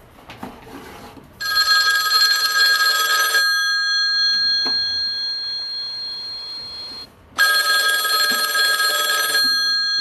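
A telephone ringing twice, each ring about two seconds long and the rings about six seconds apart, with a bell-like tone lingering between them.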